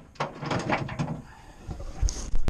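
A few short scraping and clunking sounds of a steel bushing tool being worked in a truck-trailer suspension arm to pull out a worn copper bushing.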